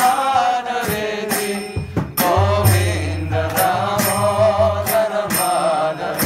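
A man singing a slow, melodic devotional chant, with sharp percussive strikes about twice a second and a low accompanying tone that comes in about two seconds in.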